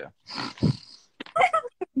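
A person laughing: a breathy, hoarse burst, then a few short laughing sounds.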